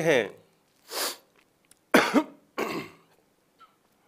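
A man clearing his throat and coughing: a short breath about a second in, then two short coughs around two and three seconds in.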